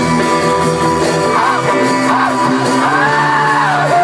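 Live rock band playing, with electric guitars, saxophone, keyboard and drums under a lead vocal that bends in pitch and holds a long, arching note in the second half.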